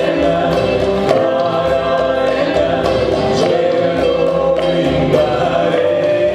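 A mantra sung by a man and a woman together, over a strummed acoustic guitar, in a slow, even chant.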